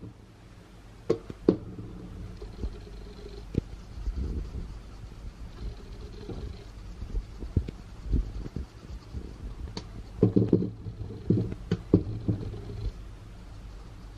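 Spice containers being handled and shaken over a frying pan of sausage and onion: scattered clicks and knocks, with a quick run of them about ten seconds in, over a faint steady hum.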